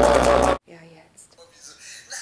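Loud live hip-hop concert music with crowd noise cuts off abruptly about half a second in, leaving a quiet room with faint voices.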